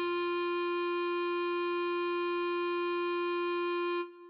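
A B♭ clarinet holds one long, perfectly steady note, the tied whole-note ending of the tune (written G, sounding concert F), and it stops right at the end.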